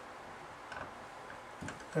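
Faint ticks and light scratches of a dry-erase marker writing on a whiteboard, over quiet room tone.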